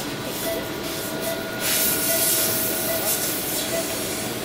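Steady hiss and hum of operating-room equipment, with a faint steady tone running through it.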